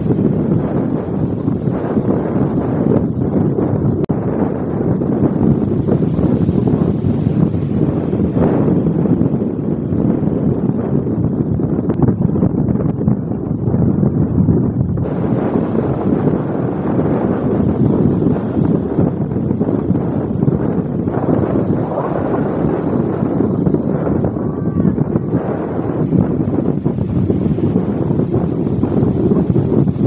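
Wind buffeting the microphone over the steady wash of breaking surf, a loud, continuous low rumble with no pauses.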